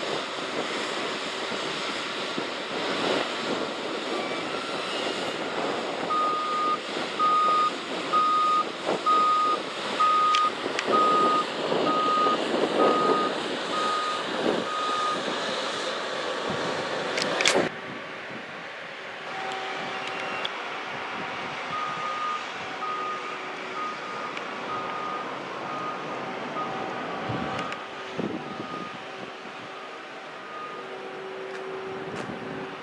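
Backup alarm of a beach earth-moving machine beeping steadily at roughly one beep a second while it reverses, in two runs separated by a gap near the middle, over continuous surf and wind noise.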